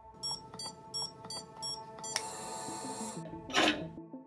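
Electronic safe keypad beeping about five times in quick succession as a code is entered, followed by a longer electronic tone lasting about a second, over a sustained film score. Near the end there is a short rush of noise as a bass line enters the music.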